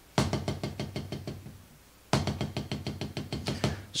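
Drumstick strokes on a drum in two quick runs of fast, even strokes, each run fading away. The drummer is letting the sticks rebound and controlling them.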